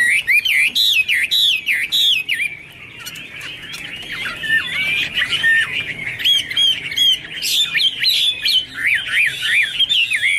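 Chinese hwamei singing: fast runs of loud, swooping whistled notes that rise and fall in pitch. The song drops to a softer stretch about three seconds in, then builds back to full strength.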